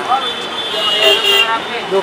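A vehicle horn sounds one steady toot lasting about a second, from about half a second in, over people talking in a busy street.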